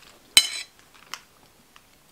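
A fork set down on a plate: one sharp clink with a short ring about a third of a second in, then a fainter tap just after a second.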